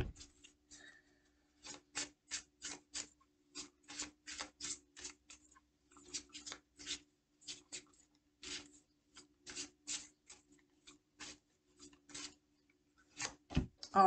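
Oracle cards being shuffled by hand: a long run of short, faint, papery swishes at about two or three a second, unevenly spaced, over a faint steady hum.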